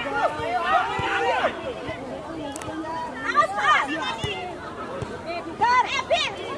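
Several voices shouting and calling out over one another at a children's football match, many of them high-pitched, with no clear words; the loudest calls come near the end.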